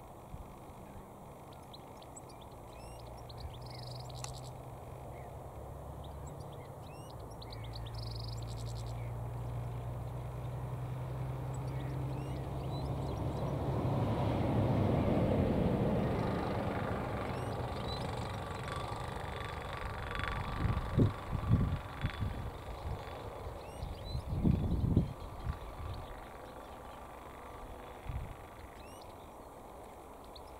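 Faint, short calls of a European goldfinch over an outdoor low rumble that swells to a peak midway and fades again, with several heavy low thumps in the second half.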